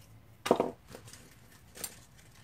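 Two short knocks from craft supplies being handled on a work table: a louder one about half a second in, and a lighter, sharper click near the end.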